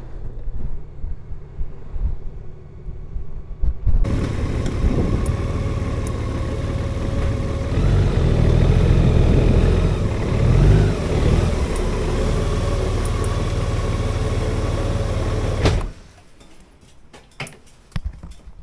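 Honda Gold Wing motorcycle: a low wind rumble on the camera while riding for the first few seconds, then the bike's flat-six engine running steadily at low speed, with a brief rise in revs partway through. The engine cuts off suddenly about two seconds before the end, leaving much quieter sound.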